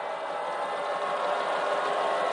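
Steady din of a baseball stadium crowd, growing slightly louder.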